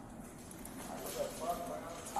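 Body-worn camera audio: faint, muffled voices with light knocks and rubbing as the camera is jostled.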